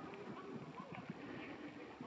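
Faint, muffled voices of people talking, mixed with soft, irregular knocking.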